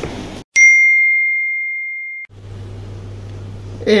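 A single bell-like ding, one clear tone struck once and ringing down steadily for nearly two seconds before cutting off abruptly: an edited-in sound effect marking a scene change. Laughter comes in at the very end.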